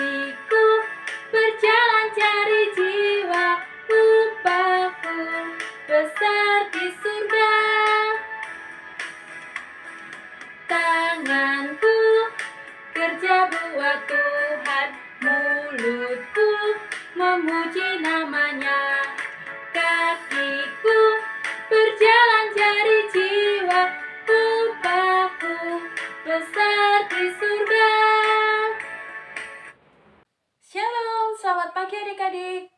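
A woman singing a lively Indonesian children's Sunday school action song with musical backing, the sung melody running on in short phrases; the song ends right at the end.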